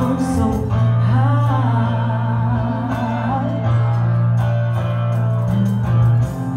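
Live band playing a pop song: a woman singing into a microphone over long held electric bass notes and keyboard.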